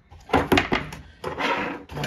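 Packaging being handled and cut with a knife on a tabletop: a few sharp knocks and clicks, then a longer scraping rustle.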